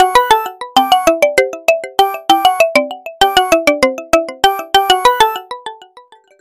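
A ringtone melody: quick runs of short pitched notes repeating in phrases, stopping shortly before the end.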